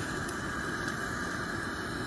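Propane camp stove burning under a pot, a steady even hiss.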